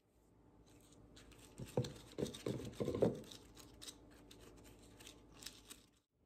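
Light clicks and scrapes of a plastic blender cup being handled, bunched together a couple of seconds in, over a quiet background.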